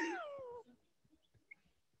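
A single high-pitched cry at the start, about half a second long, gliding downward in pitch, followed by near silence.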